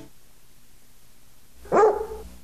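A single short dog bark, used as a logo sound effect, near the end, after a faint hiss.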